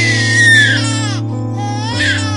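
A baby crying: one long high wail that falls in pitch, then a second cry beginning near the end, over a steady low music drone.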